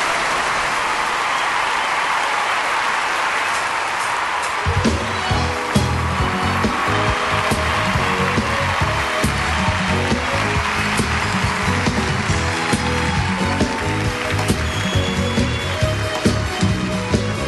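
A live concert crowd's steady noise, then a band's bass and drums come in about five seconds in, starting a driving, rhythmic song intro that runs on under the crowd.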